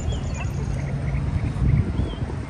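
Low rumble of wind and handling on a handheld camera's microphone while walking outdoors, with a few faint, short, high bird chirps.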